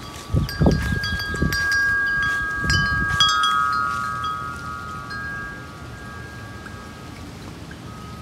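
Wind chime ringing in the breeze: several notes of different pitch struck in quick succession in the first three seconds or so, then ringing on and fading away, with gusts of wind on the microphone while they are struck.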